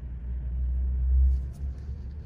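A deep low rumble that swells for about a second and then drops off sharply about a second and a half in.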